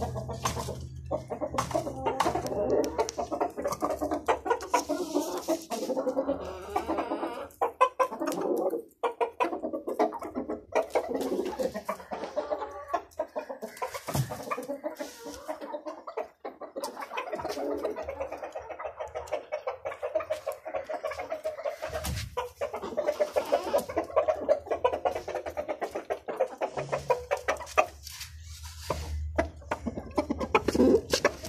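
A flock of desi aseel chickens, roosters and hens, clucking and calling on and off. Music plays underneath.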